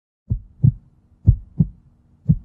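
Heartbeat sound effect: pairs of short, low lub-dub thumps, about one pair a second, over a faint steady low tone.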